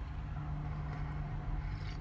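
Steady low drone of a semi-truck's diesel engine idling, heard from inside the cab.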